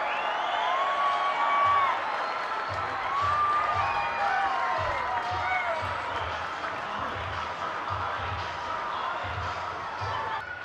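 Baseball stadium crowd cheering and shouting for a home run. Ballpark music with a steady low beat joins about three seconds in.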